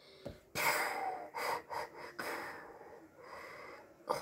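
A boy imitating Darth Vader's respirator breathing with his mouth: a series of noisy breaths in and out, the first and loudest about half a second in.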